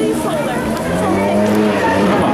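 A crowd of marchers' voices, many people calling out at once and overlapping, some holding long drawn-out notes.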